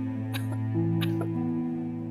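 Dramatic background score of slow, sustained low chords that shift to a new chord partway through. A few brief, sharp sounds, about four, sound over it.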